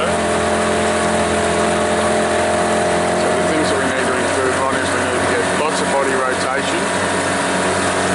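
Motorboat engine running steadily at low speed, a constant even drone.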